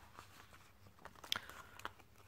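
Faint rustling of card stock and a thin clear plastic sheet being handled on a table, with a couple of light clicks in the second half.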